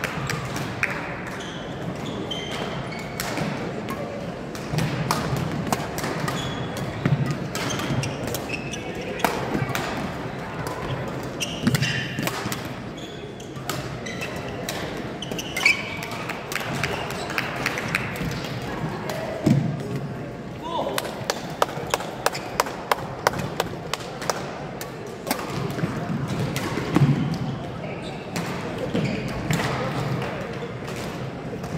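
Badminton rally in a gymnasium: sharp clicks of rackets striking the shuttlecock throughout, with footfalls and short shoe squeaks on the court floor, over a murmur of voices in the hall.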